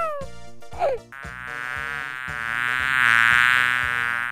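Cartoon insect buzzing sound effect that starts about a second in, swells louder to a peak and then begins to fade, over background music with a steady beat.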